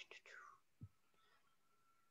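Near silence: room tone, with a faint breathy whisper-like sound at the start and a soft low thump a little under a second in.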